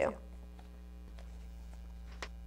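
Steady low electrical mains hum under quiet room noise.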